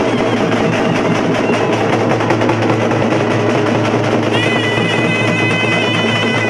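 A live street band of drums: a large two-headed drum beaten with a stick and a smaller drum, drumming steadily throughout. About four seconds in, a wind instrument joins with a wavering high melody.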